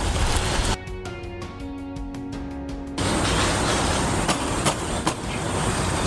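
Low, steady outdoor rumble, interrupted about a second in by roughly two seconds of music with held notes that starts and stops abruptly. Near the end a few light clicks come from the wire-mesh cage trap being fitted against the metal excluder adapter.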